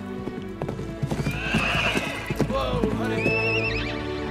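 Horses' hooves clip-clopping and stamping on the ground, with a horse whinnying near the end, over a sustained orchestral film score.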